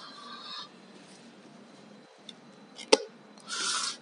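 Cardboard product box being handled and scraped while the tape sealing it is worked at: a faint scrape at the start, one sharp click about three seconds in, and a short rasping scrape just before the end.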